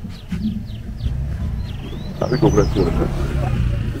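A car's engine running low and steady as the car passes at close range, growing louder from about a second in, with people's voices joining partway through.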